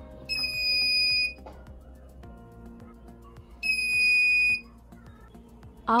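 Electronic buzzer of a homemade BC547-transistor laser security alarm giving two high-pitched beeps, each about a second long and some three seconds apart: the alarm going off as the laser beam falling on its LDR light sensor is broken.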